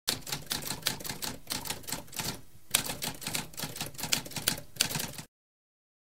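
Typewriter typing: a fast run of key strikes with a brief pause about halfway through, stopping abruptly a little after five seconds in.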